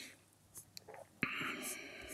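A man's soft breath noise close to the microphone. After a near-silent gap and a faint click, a quiet hiss of breath starts suddenly just past one second in.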